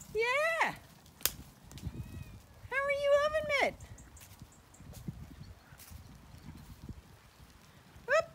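Zwartbles ewes bleating: a short call right at the start and a longer, wavering call about three seconds in.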